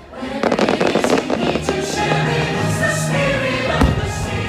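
A choir singing over music, mixed with firework bursts crackling about half a second to a second in and a single sharp bang near the end.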